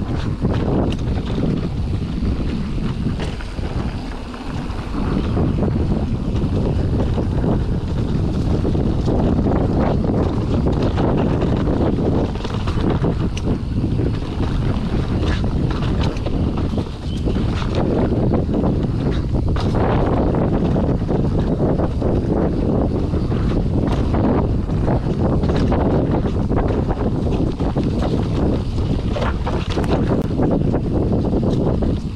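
Wind rushing over the action camera's microphone as a mountain bike rolls fast down a dirt forest trail, with steady tyre rumble and frequent rattles and knocks from the bike over the bumps.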